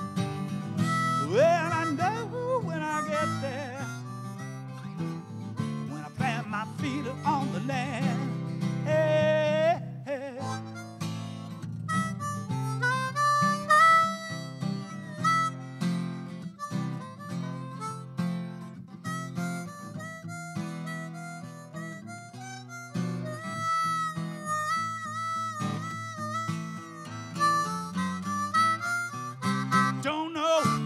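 Harmonica solo over a strummed acoustic guitar, an instrumental break between verses of a song. The harmonica bends and wavers its notes in the first ten seconds or so, then plays long held notes and chords.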